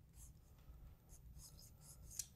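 Near silence, broken by a few faint, brief scratching sounds.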